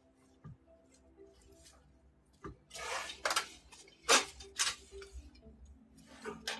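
Handling noises: a couple of faint knocks, then louder rustling and scraping bursts in the second half, over a faint steady hum.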